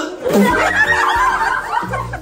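A Santa-style "ho, ho, ho" laugh, called out three times over background music.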